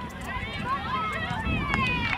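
Several voices shouting and calling at once across a soccer field during play, growing louder near the end.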